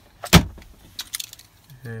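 The plastic centre-console lid of a car shutting with one sharp knock, followed about a second later by a few light clicks and rattles.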